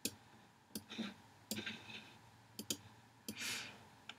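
Several faint, irregularly spaced clicks of a computer mouse as windows and a document are opened on a computer, with a soft breath about three and a half seconds in.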